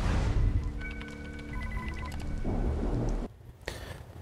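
A TV news graphics sting: a whoosh into a low rumble, with steady electronic tones and short high beeps over it, ending after about three seconds.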